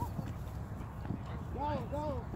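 Shouts from players on a flag football field, with two short rising-and-falling calls near the end, over a steady low rumble of wind on the microphone.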